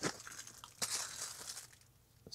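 Packaging being handled: a foam sheet rustling and rubbing against its cardboard box, with a couple of sharp clicks, dying away near the end.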